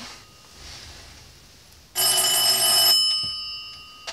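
Old black rotary-dial telephone's bell ringing once for about a second, about two seconds in, then dying away.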